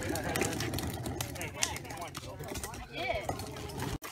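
Indistinct talking and laughter from a small group, with scattered light clicks and knocks.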